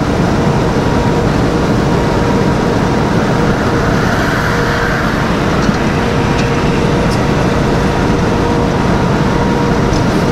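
Steady engine and road noise of a semi-truck cruising at highway speed, heard inside the cab: an even low rumble with a faint steady hum running through it.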